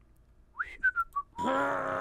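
Someone whistling a few short notes, one rising and then three stepping down. About two-thirds of the way through, a long, steady held note begins.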